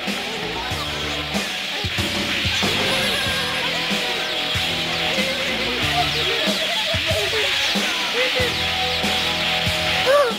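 Background score music with guitar over a stepping bass line.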